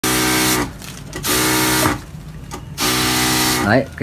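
Powered pesticide sprayer spraying fungicide through a wand in three short bursts. Each burst is a motor hum with the hiss of the spray, and its pitch falls as the burst cuts off.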